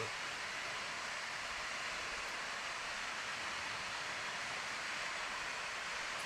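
A steady, even rushing hiss that does not change.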